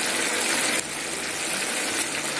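Egg and drumstick curry simmering in a pan: a steady sizzling hiss over a low hum, dropping slightly in level just under a second in.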